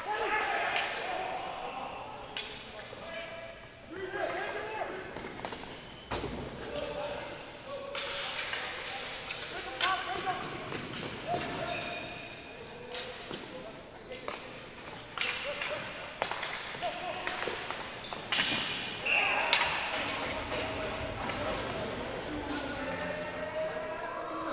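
Ball hockey play in an echoing arena: repeated sharp clacks and thuds of sticks striking the plastic ball and the ball hitting the boards, with players shouting to each other.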